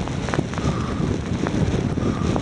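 Wind buffeting a hand-held phone's microphone on a moving bicycle, a steady low rumble.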